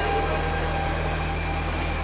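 Steady low hum and rumble of a train standing at a station platform.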